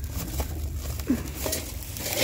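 Steady low hum of a store interior, with a few faint rustles and clicks as plastic-wrapped party bowls are handled on a metal shelf.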